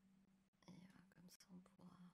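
Near silence: a person muttering faintly under her breath from about half a second in, over a steady low hum.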